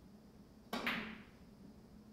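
A single sharp click of a three-cushion billiard shot about three-quarters of a second in, the cue striking the ball on a carom table, fading quickly over a faint steady room hum.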